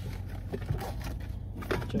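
Faint scraping and rustling of a phone charging cable and purse being handled, over the steady low hum of a car cabin.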